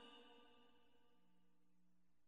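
Near silence: the faint echo of a Quran recitation phrase dies away in the first half second.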